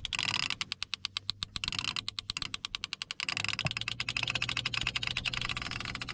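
Clicker on a conventional fishing reel ratcheting rapidly as line is pulled off the spool, the click rate speeding up and slowing down. A low steady hum runs underneath.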